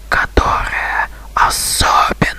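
A person whispering, with a strong hissing sound about three quarters of the way through.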